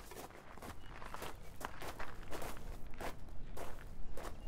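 Footsteps of a person walking on a dirt street, a steady run of steps.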